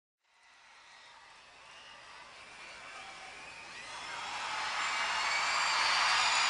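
A steady rushing noise fades in from silence and grows steadily louder, with faint high wavering cries or whistles running through it.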